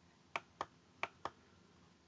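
Computer mouse clicked four times, in two quick pairs, to advance the presentation slides.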